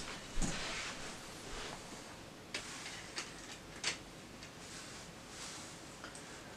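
A few faint, sharp plastic clicks with light rustling as a red plastic re-railer is laid onto OO-gauge model railway track.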